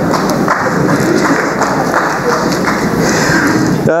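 An audience applauding in a hall: a dense, even crackle of many hands clapping that stops abruptly near the end.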